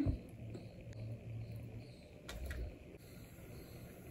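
Quiet handling sounds of fingers setting chocolate pieces into cake batter in china cups, with two soft clicks a little past halfway over low room tone.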